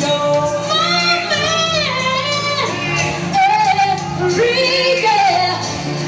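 Live R&B performance: a woman singing long, sliding held notes into a microphone over a band's bass and steady drum beat.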